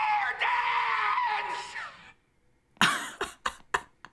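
A man's drawn-out scream from a TV episode, fading out about two seconds in. After a short silence come short bursts of laughter.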